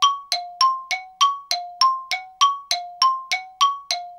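Added bell-like chime effect: clean struck dings, about three a second, alternating between a lower and a higher note, each ringing briefly before the next.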